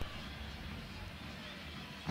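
Faint, steady background noise with a low hum underneath, in a short gap between commentators' speech.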